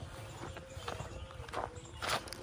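Footsteps on a dry dirt path, a few soft irregular steps over a low rumble.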